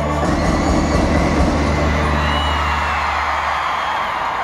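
Sinaloan brass band holding a final chord over a low sustained tuba note, which cuts off near the end, as a live crowd cheers over it.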